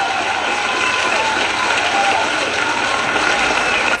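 Recorded crowd applause and cheering played in as a sound effect, a steady wash of clapping with a few voices, cutting in and out abruptly.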